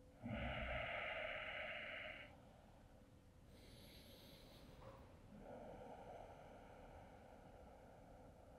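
A man breathing audibly while holding a deep stretch: a long exhale of about two seconds, a short, higher in-breath about four seconds in, then a slower exhale that carries on to the end. The breaths are faint.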